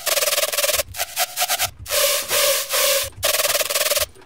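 Heavily distorted hard trap synth lead from Serum playing in four loud, gritty blocks split by short gaps, each chopped into a rapid machine-gun stutter by an LFO.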